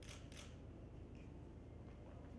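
Two quick clicks about a third of a second apart, over a low steady room hum.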